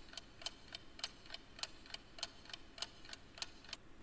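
Faint clock-ticking sound effect marking a countdown timer: steady, evenly spaced ticks in a tick-tock pattern.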